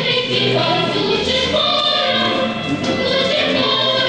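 Music with a choir of voices singing, steady and loud throughout.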